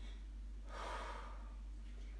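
A woman's single audible breath, starting a little under a second in and lasting about a second.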